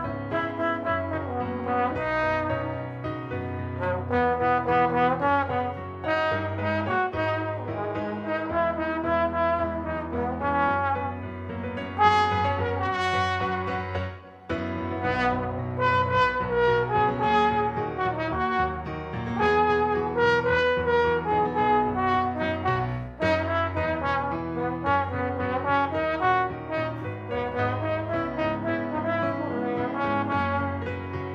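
Trombone playing a song melody in connected phrases, with a short break for breath about fourteen seconds in.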